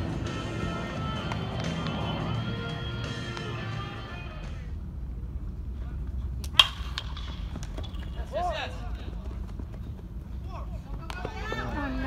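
Music with a steady pitched line for the first few seconds, then ballpark sound with scattered voices and a single sharp crack about six and a half seconds in, as the pitch reaches home plate.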